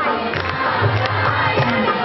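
A large crowd cheering and calling out all at once, with music underneath.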